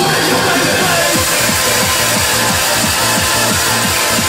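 Loud, fast hardcore rave music played through a club sound system from a DJ's decks. A rapid pounding kick-and-bass pattern comes in about a second in.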